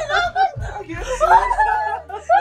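A woman's excited voice, calling out the end of "I can't see!" and then breaking into laughter.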